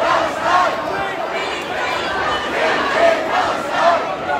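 A large crowd of protesters shouting together, many voices overlapping, with single raised shouts standing out above the mass.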